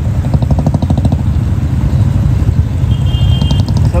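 Royal Enfield Bullet single-cylinder motorcycle engine running close by, with a loud, low, evenly pulsing exhaust beat. A short high-pitched tone sounds briefly about three seconds in.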